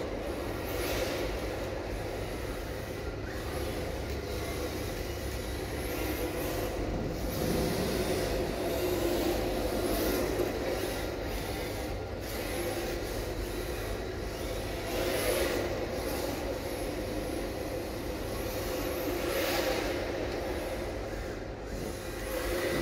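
A 1/10-scale rear-wheel-drive electric RC drift car (MST RMX 2.0) sliding on smooth concrete: its motor whines and its hard drift tyres scrub through the slides, with a brief surge every few seconds as it is throttled through each drift, over a steady low rumble.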